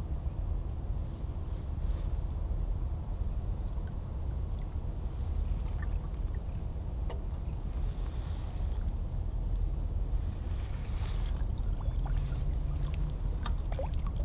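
Steady low rumble of wind and water lapping at the side of a boat, with a few faint splashes from hands and a large blue catfish being held in the water before release.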